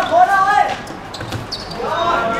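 A football thudding as it is kicked and bounces on a hard court, a few sharp knocks about a second in, after players' shouts.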